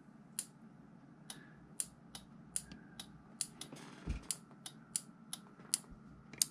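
A faint series of sharp clicks, about three a second, with a soft thump about four seconds in.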